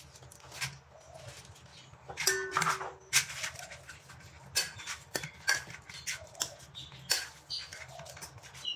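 A metal fork mashing soft fermented cassava (tapai ubi) in a stainless-steel bowl: repeated light clinks and scrapes of metal on metal. A short pitched sound comes from the background about two seconds in.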